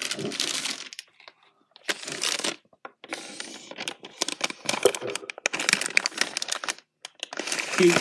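Handling noise from a phone being moved around: rustling and scraping on its microphone in several stretches, with scattered clicks.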